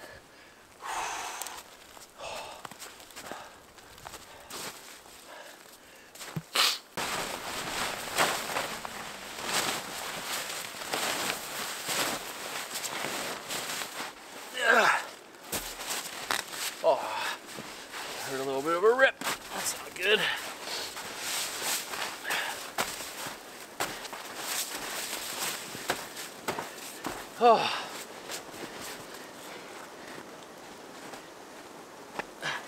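Crunching and scraping of packed snow and rustling tent fabric as snow is dug away by hand to free buried tent stakes, with several short wordless vocal sounds of effort.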